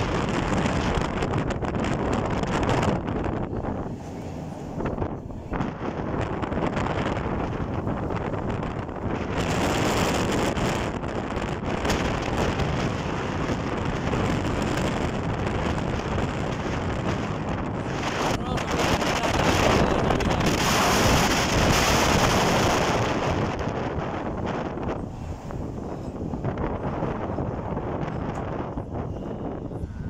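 Wind rushing over the microphone of a moving vehicle on a road, a continuous noise that swells and eases, loudest about two-thirds of the way through.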